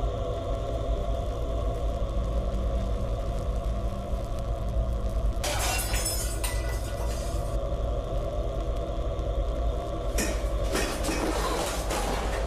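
Steady low droning horror underscore, broken twice by noisy crashing, shattering bursts: one about five seconds in lasting a couple of seconds, and another near the end.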